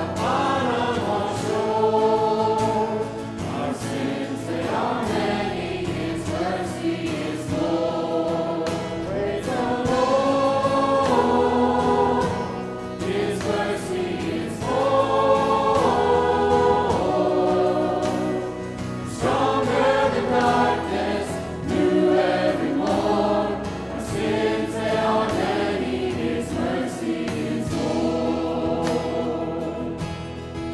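Church worship team and choir singing a gospel-style praise song together, with instrumental accompaniment, in sustained phrases a few seconds long.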